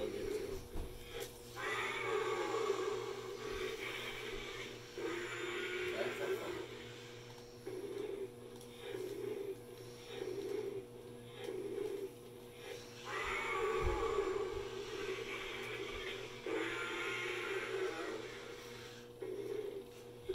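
Remote-controlled walking toy T-Rex: its electric gear motor running in repeated pulses about once a second as it steps, with longer electronic roaring sound effects from its speaker about two seconds in and again around thirteen seconds in.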